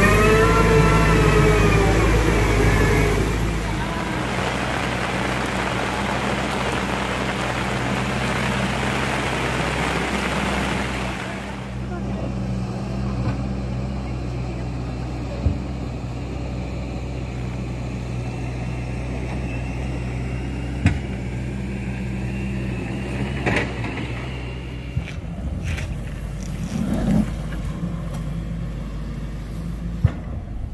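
Heavy diesel engine of an excavator running with a steady low drone, its pitch sweeping up and back down in the first few seconds. A hiss runs under it for the first ten seconds or so, and a few sharp knocks come later.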